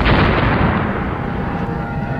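Explosion sound effect: a sudden blast right at the start that dies away over about a second, with music playing underneath.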